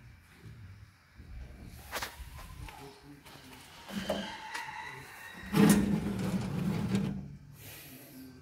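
A sheet-metal electrical cabinet door being handled and opened. A short squeak comes a few seconds in, then the loudest part, a metallic scraping clatter of about a second and a half.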